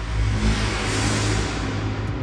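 Logo intro sound effect: a loud, swelling rush of noise over a deep, steady bass drone, the build-up of an animated channel sting.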